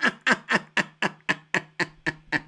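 A man laughing hard in a steady run of short "ha" bursts, about four a second.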